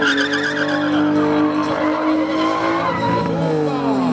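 Drift car sliding through a turn, its engine held at high revs while the tyres squeal. The pitch climbs at the start, holds steady, and drops away near the end.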